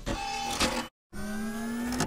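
3D printer stepper motors whirring in two stretches, split by a sharp cut to dead silence about a second in. The second stretch is a slowly rising whine.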